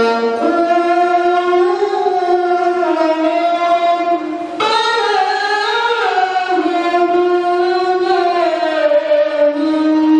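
A single voice chanting in long, ornamented held notes that bend in pitch, with a short break for breath about four and a half seconds in.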